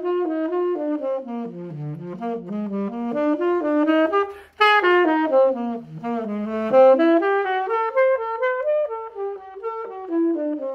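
Saxophone playing a slow, single-line jazz exercise in even eighth notes. The line moves by half and whole steps into chord tones on the downbeats, with one short breath about halfway through.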